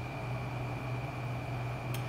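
Steady low machine hum with a thin high whine above it, the room tone of running equipment. A short click comes near the end.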